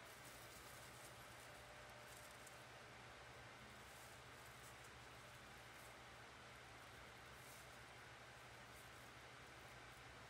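Near silence: room tone with a steady low hum and a few faint ticks.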